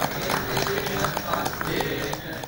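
Scattered hand clapping from a small group of people in a room, irregular claps over a busy background hum.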